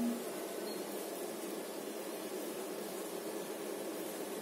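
Steady hiss of background room noise, with no distinct sounds.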